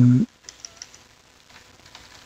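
Computer keyboard typing: a few light, scattered keystrokes.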